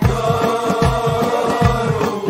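Libyan traditional folk music: men's voices holding one long note together over steady frame-drum beats, with an oud in the ensemble.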